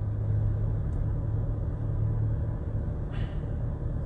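Steady low hum of a car, heard from inside its cabin, with a brief soft rustle about three seconds in.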